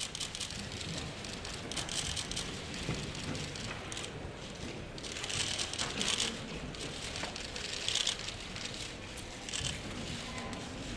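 Bursts of rapid camera shutter clicks from several press photographers' DSLR cameras, coming in clusters about two seconds in, around five to six seconds, near eight seconds and again just before the end, over the low shuffle of a large hall.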